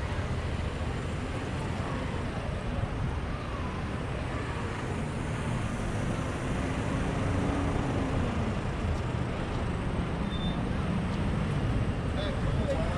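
Steady traffic noise on a busy city street: cars, vans and lorries running and passing, with passers-by talking faintly.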